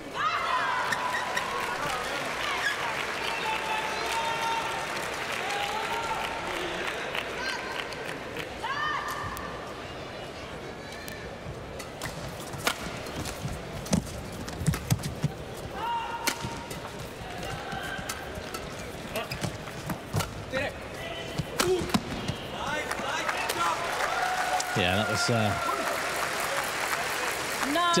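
Arena crowd shouting and calling out in sustained cries, with a badminton rally in the middle: a run of sharp racket strikes on the shuttle and shoe squeaks on the court. The crowd swells again with cheering near the end as the point is won.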